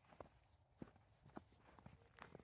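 Four faint crunches, spaced about half a second apart, from sheep at a hay feeder in trampled snow.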